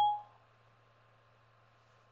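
iPad dictation's end tone: a short beep as the speech-to-text microphone stops listening. After it there is only a faint low hum.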